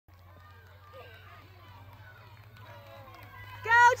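Faint chatter of onlookers over a low steady hum, then a loud high-pitched shout of "Go" cheering a runner near the end.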